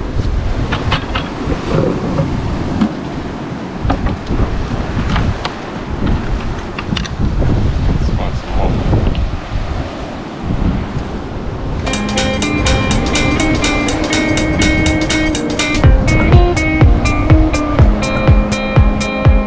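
Wind and surf against the microphone, with scattered sharp taps of a metal tool on rock as oysters are knocked free. About two-thirds of the way through, a plucked acoustic guitar music track starts and carries on.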